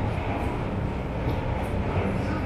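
Paris Métro line 7bis train (MF 88 stock) at the platform, a steady low rumble from its running gear and equipment echoing in the tiled station.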